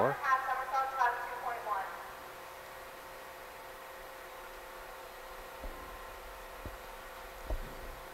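A commentator's voice for about the first two seconds, then a quiet, steady hum of the pool hall with a faint held tone. In the last few seconds come a few soft, low thumps: a diver's footsteps on the springboard as she walks out along it.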